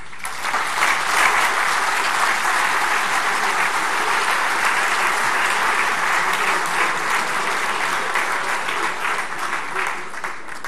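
Large audience in a hall applauding, starting suddenly and holding steady for about ten seconds before easing off near the end.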